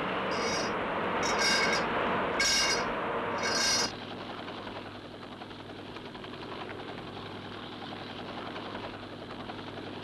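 Drilling-rig machinery on the drill floor running loudly, with four short high-pitched squeals over the first four seconds. About four seconds in it cuts abruptly to the steadier, quieter drone of a helicopter heard from inside the cabin, with a low hum.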